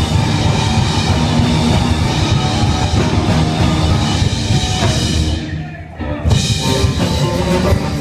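Live rock band playing electric guitars, bass and drum kit. The band drops back briefly a little over five seconds in, then comes in again at full volume.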